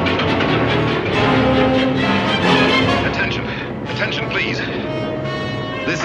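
Loud, dense dramatic film score of held notes that thins out after about three seconds, with a man's voice shouting over it in the second half.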